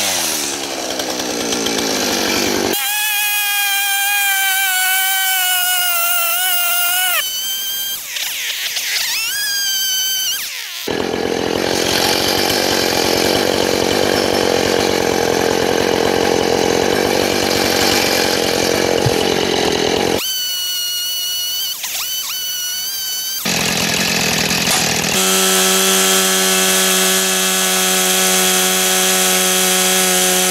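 Gas chainsaw running in a series of short segments: revving up with rising pitch, cutting into wood with a long rough, noisy stretch, and settling to a steadier, lower speed near the end.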